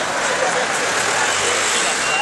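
Busy street ambience: steady road traffic with people's voices mixed in.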